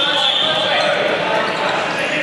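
Dodgeball game in an echoing sports hall: players calling out, with a sustained high-pitched squeal through about the first second.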